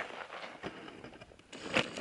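Small stick fire burning in an uninsulated galvanized-pipe rocket stove: a faint rushing, strongest at the start, with a few scattered crackles.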